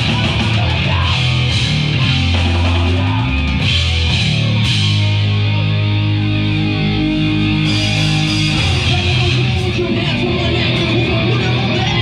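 Hardcore punk band playing live and loud: distorted electric guitar and bass over a drum kit. About five seconds in, the cymbals thin out and long chords ring for a few seconds before the full band picks up again.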